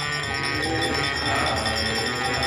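Devotional kirtan music: a harmonium playing sustained reedy chords over a mridanga drum, with a steady high ringing on top.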